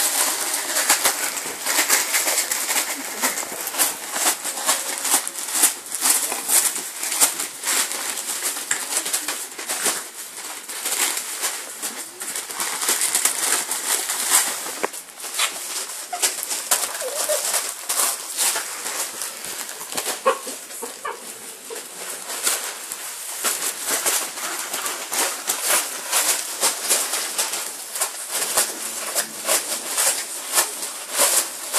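Wrapping paper crinkling and tearing in a dense, continuous crackle as small dogs rip open wrapped presents.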